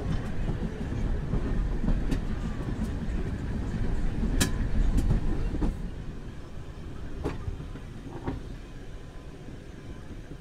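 Running rumble of a heritage railway coach, a former Class 117 DMU trailer, heard from its window, with sharp clicks of the wheels over rail joints at irregular intervals. The running noise drops in level in the second half.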